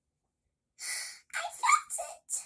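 A child's breathy vocal sounds: after a silence, a sharp puff of breath about a second in, then a short, high-pitched rising vocal sound near the end.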